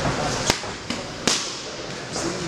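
Boxing gloves striking focus mitts: three sharp slaps within about a second.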